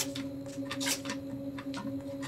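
Light clicks and taps of a plastic nutrient bottle and measuring spoon being handled for pouring, a few scattered through the two seconds, over a steady hum in the room.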